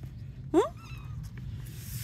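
A cat's single short meow, rising in pitch, about half a second in.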